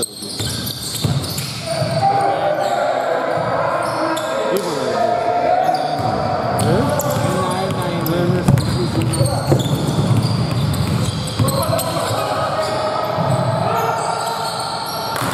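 A basketball game on a hardwood indoor court: the ball bouncing as it is dribbled, with scattered impacts and players' voices ringing through the hall.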